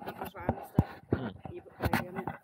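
A man murmuring "mm" in a low voice, with sharp knocks and rubbing from fingers handling the camera close to its microphone.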